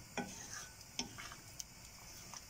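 Wooden spoon stirring a thick moong dal and vegetable mixture in a metal pot, faint, with a few light knocks of the spoon against the pan.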